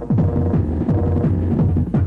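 Happy hardcore dance music played loud from a DJ set: a rapid train of heavy kick-drum hits, each dropping in pitch, over a steady low bass hum.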